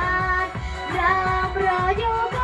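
A young girl singing a pop song into a microphone, holding and bending her notes over a backing track with a steady beat.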